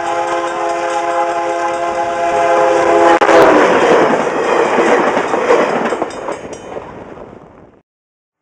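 A VIA Rail EMD F40PH locomotive's multi-chime horn sounds a steady chord for about three and a half seconds as the train approaches the crossing. The horn then stops and the locomotive and cars pass close by with a loud engine rumble and wheel noise. A level-crossing bell rings faintly at about four strokes a second near the end, before the sound fades out.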